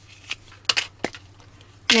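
A few light, sharp clicks of hard plastic being handled as a small plastic toy hair-curler capsule is pulled open.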